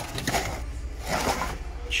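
Cardboard parts box handled close to the microphone: a few rustling scrapes of cardboard over a low steady hum.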